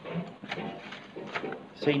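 Light clicks and taps of a small cardboard chocolate box and its wrapped pieces being handled, a few separate clicks over the two seconds, with a voice starting to speak at the end.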